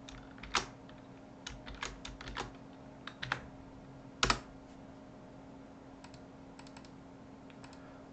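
Computer keyboard keystrokes in short irregular runs while a spreadsheet formula is typed, the loudest keystroke a little past four seconds in and a few fainter clicks near the end, over a faint steady hum.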